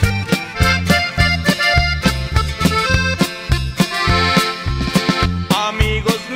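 Instrumental passage of a Mexican regional band song: a bass line alternating between two notes on each beat, under drums and a lead melody, with no singing.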